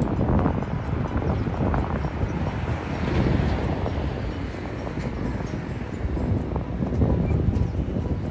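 Wind blowing across a handheld phone's microphone: a rough, low rumble that swells and eases in gusts.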